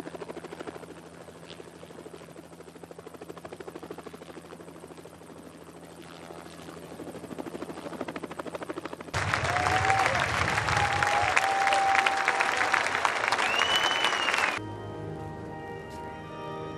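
A helicopter's rotor chopping steadily. About nine seconds in it cuts abruptly to a loud crowd cheering and applauding, with whistling, and near the end to a church organ holding sustained chords.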